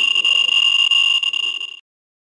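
Geiger counter's speaker clicking so fast that the clicks merge into a steady high-pitched buzz: the CDV-700 probe is on a hot particle, at roughly 32,000 counts per minute. It cuts off suddenly near the end.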